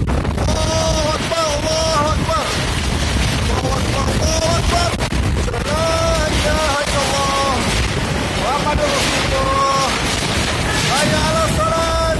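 Strong whirlwind winds rushing loudly and without letup against the building and microphone, with flying debris. High-pitched voices cry out over it again and again, about a second at a time.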